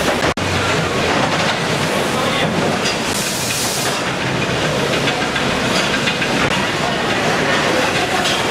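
Steady, dense rattling and hiss of a fish-auction conveyor line carrying plastic crates, mixed with the noise of a busy hall.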